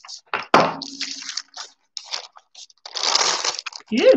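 Thin paper sheet crinkling and rustling as it is lifted and handled, in several irregular bursts with a sharp crackle about half a second in; the longest burst comes near the end.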